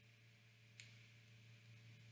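Near silence: room tone with a faint steady low hum and one faint click just before a second in.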